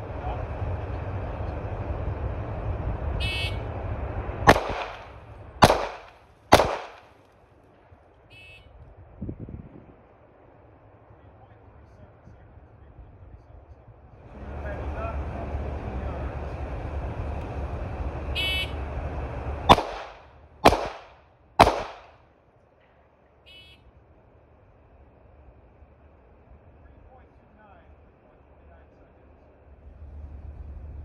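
A shot timer's start beep, then three pistol shots about a second apart, fired at speed with a red-dot sight; the same beep-and-three-shot string repeats about fifteen seconds later. A steady noise runs under the lead-up to each string.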